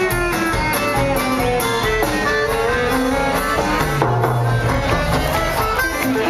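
Live band playing an instrumental passage: acoustic guitars and violin carry a quick melodic line of fast-moving notes over drums.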